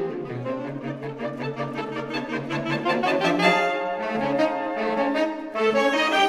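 Saxophone ensemble playing a fast passage of quick, evenly repeated short notes in several parts, with a brief dip and then a louder full-ensemble entry near the end.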